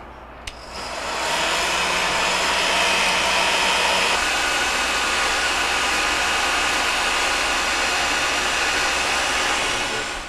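Electric heat gun running, a steady rush of blown air and fan motor that builds up about a second in and holds, its tone shifting slightly about four seconds in. It is blowing hot air onto a refrigerator water line to thaw ice frozen inside it.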